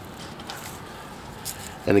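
Faint crackling and rustling of roots being twisted off a Sempervivum (hens-and-chicks) cutting by hand, with a small click about a second and a half in.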